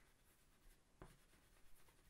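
Faint scratching of oil pastels being rubbed onto paper while colouring, with a soft tap about a second in.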